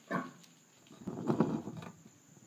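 Electric guitar through a TC Electronic Rottweiler distortion pedal: a short scratch at the start, then about a second of quiet, gritty muted-string noise.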